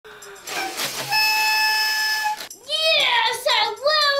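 Party blower (paper blowout noisemaker) blown, one steady buzzy tone lasting just over a second. It is followed by a high voice calling out with rising and falling pitch.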